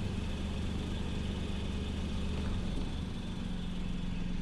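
A vehicle engine idling steadily with a low hum; the deepest layer of the hum drops away about two and a half seconds in, leaving a steady low drone.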